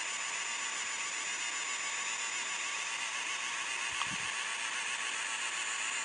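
3D printing pen running steadily as it extrudes plastic filament: an even whirring hiss from its feed motor and cooling fan, with a thin steady high whine.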